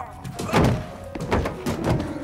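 A person tumbling down a wooden staircase: a heavy thud about half a second in, then three more quick thuds near the end.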